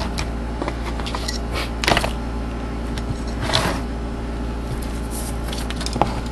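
Rustling and light knocks from an aluminium bracket with spark plug leads being handled, a few times, over a steady low hum.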